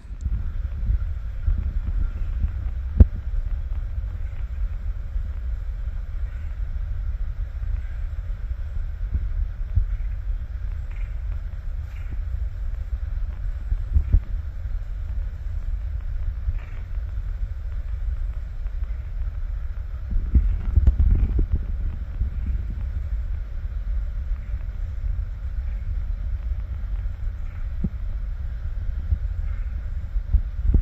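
Wind buffeting the microphone: a continuous low rumble that rises and falls. It is broken by a sharp knock about three seconds in and a smaller one at about fourteen seconds.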